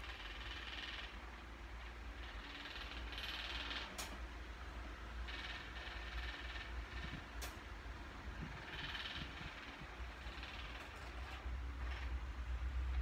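Soft rustling of a hand stroking a cat's fur and brushing the clothes beside it, coming in short patches every two to three seconds over a steady low hum, with two sharp clicks, about four seconds in and near the middle.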